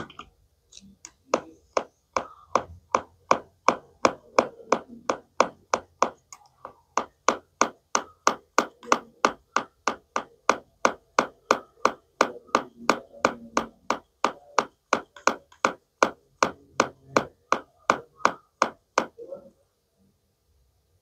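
Plastic toy knife tapping over and over on a plastic toy tomato and cutting board: sharp clicks in a steady rhythm of about two to three a second.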